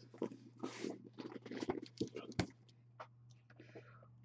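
A sealed cardboard card case being handled: scraping and rustling against the box with several short knocks, the sharpest about two and a half seconds in, over a steady low hum.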